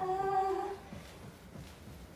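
A person's short moan of pain on one steady, fairly high note, lasting under a second, drawn out by hard thumb-and-hand pressure into a stiff calf during deep-pressure shiatsu.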